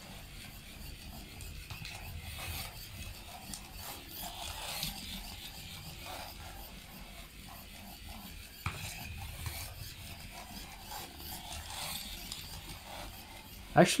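Small DC gear motors of an Arduino line follower robot running faintly as it drives around the track, steering back and forth along the line. A single sharp click about two-thirds of the way through.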